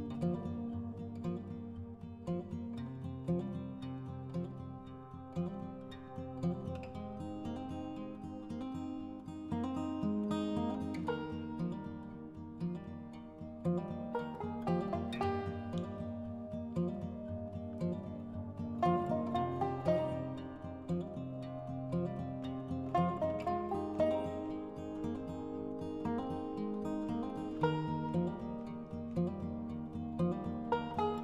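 Instrumental background music with plucked strings, running throughout.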